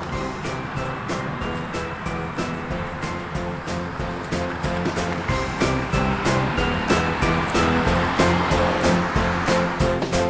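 Background music with a steady beat, getting a little louder in the second half.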